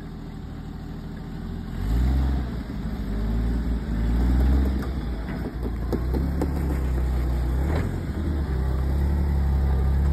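Rock crawler's engine idling low, then revving up about two seconds in and pulling under load as the rig backs down the slickrock. The engine note rises and falls with the throttle, then holds steady at a higher pitch.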